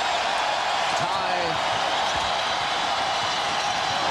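Steady noise of a basketball arena crowd, with a basketball being dribbled on the hardwood court.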